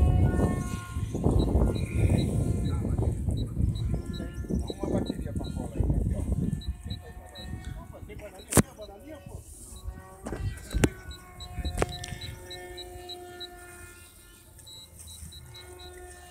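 Radio-controlled model airplane motor heard overhead, a steady hum made of several held pitches. Wind rumbles on the microphone through roughly the first half, and two sharp clicks come a little after the middle.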